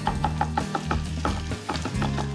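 A quick, even run of knife chops on a cutting board as parsley is chopped, over background music with a steady low bass.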